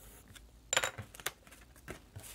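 A pencil set down on a desk, with a quick cluster of light clicks a little under a second in and a few fainter taps after. Paper and card are being handled.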